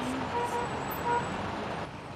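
Road traffic noise on a busy city street: a steady wash of passing cars.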